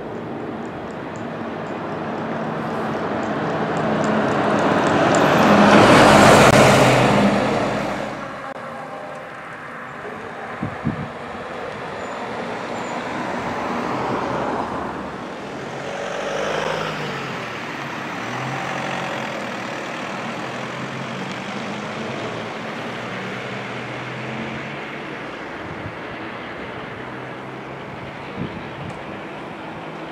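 Road traffic passing: one vehicle passes close by, its noise building over several seconds to a loud peak about six seconds in and then fading, and fainter vehicles pass later. A steady low engine drone runs underneath.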